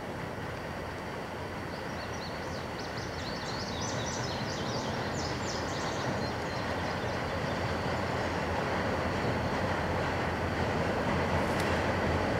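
EMD GP39RN diesel locomotive approaching at the head of a freight train. Its engine and wheels make a steady rumble that slowly grows louder as it nears.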